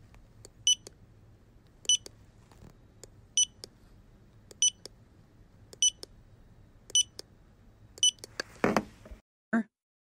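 Short electronic beeps of a fingerprint scanner, seven in a row about a second and a quarter apart, each a brief high tone.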